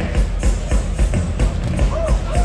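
Norteño band playing a dance number, with a steady fast beat of about three beats a second.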